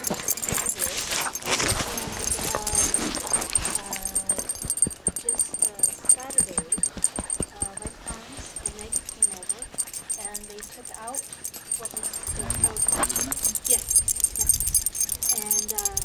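A dog nuzzling and pressing its nose and fur against the camera microphone: a run of rubbing and bumping knocks, with a low rumble of handling noise about three-quarters of the way through.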